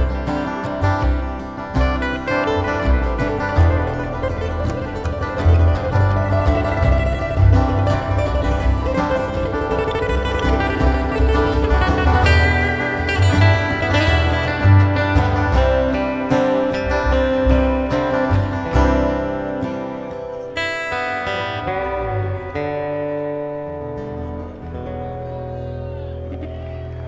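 Live acoustic band playing an instrumental passage on two acoustic guitars and an upright bass. It thins out and gets quieter about twenty seconds in, leaving held bass notes and a few ringing guitar notes.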